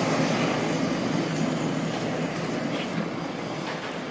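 Butane kitchen torch on a gas canister burning with a steady hissing rush as its flame sears the mayonnaise topping on scallops in the half shell, easing slightly toward the end.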